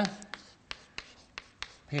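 Chalk writing on a chalkboard: a quick series of sharp taps and short scrapes as symbols are chalked onto the board.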